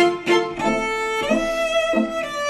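Instrumental passage of a gothic rock song led by violin: short repeated notes about three a second give way, about half a second in, to long held notes that step to a new pitch about halfway through.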